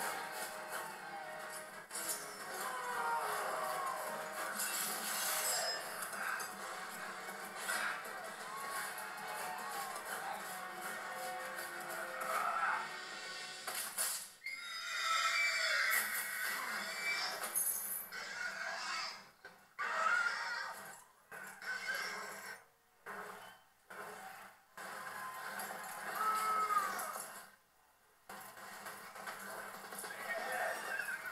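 Soundtrack of a fire-filled cavalry battle scene played back through speakers in a room: horses whinnying over music and battle noise. In the second half the sound drops out briefly several times.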